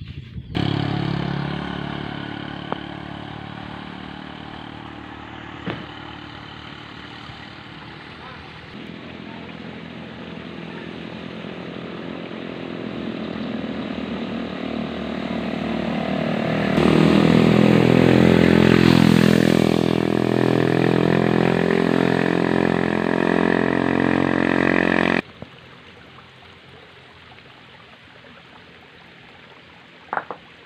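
Motorcycle engine running, fading after it starts and then building up again to its loudest in the second half, with the revs dipping and rising a little past the middle. It cuts off suddenly about five seconds before the end, leaving a quieter background.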